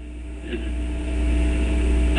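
A steady low rumble with a faint hum and hiss, growing louder over the two seconds.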